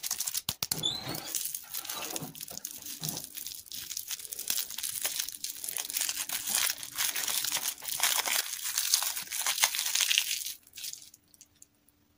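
Crinkly plastic lollipop wrapper being crumpled and torn off a small lollipop, a dense run of crackling that stops about a second before the end.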